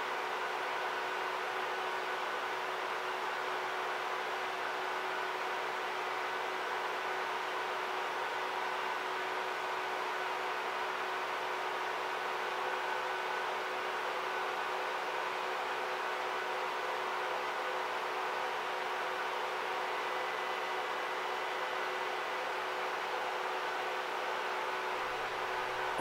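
Steady whirring hiss with a faint constant hum, fan-like and unchanging throughout.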